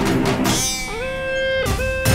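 Background score music: a busy percussive passage, then a single plucked-string note that slides up in pitch and holds for under a second, followed by a second short note near the end.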